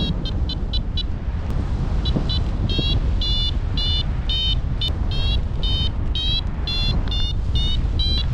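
Paragliding variometer beeping its climb tone: short, high beeps, quick at first, pausing briefly about a second in, then resuming steadily at about three a second, some sliding slightly upward in pitch; the rapid beeping signals the glider rising in lift. A low rush of wind on the microphone runs underneath.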